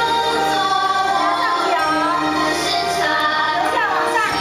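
A song sung by a group of voices over instrumental accompaniment, with held notes and gliding vocal lines.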